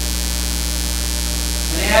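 Steady electrical mains hum, a low constant drone carried in the sound system or recording feed. A man's voice begins to speak near the end.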